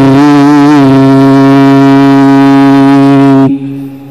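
A man's voice reciting the Quran in melodic tilawah style. He holds one long vowel, ornamented with pitch wavers at first and then sustained on a single steady note, until it breaks off about three and a half seconds in.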